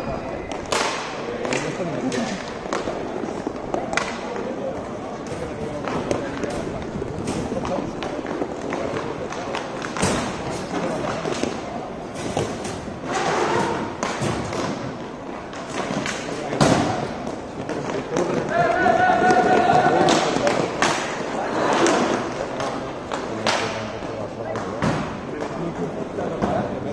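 Inline hockey play on a plastic sport-court floor: hockey sticks and the puck knocking against the tiles and each other in repeated sharp clacks at irregular times. Players shout during play, with one longer shout about three quarters of the way through.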